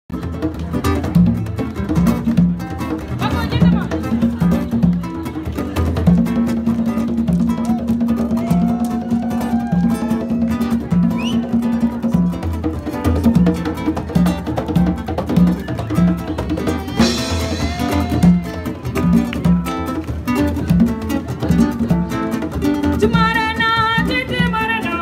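Live band music: acoustic guitar and percussion over a steady repeated bass line, with a woman's voice coming in singing near the end.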